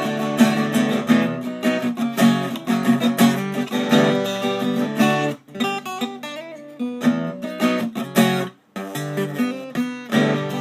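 Auditorium-size acoustic guitar strummed in chords, ringing cleanly with no fret buzz. The strumming thins to quieter notes for a second or so after about five seconds, and stops briefly near the end before picking back up.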